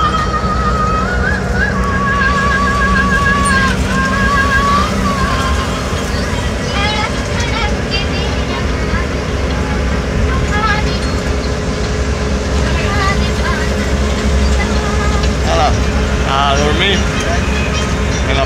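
Bus engine and road rumble heard from inside the passenger cabin, with music from the bus radio: a wavering melody in the first few seconds. Voices come in later.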